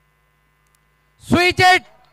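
A faint steady electrical hum under near silence. About a second and a quarter in, a man's voice breaks in with a loud two-part exclamation.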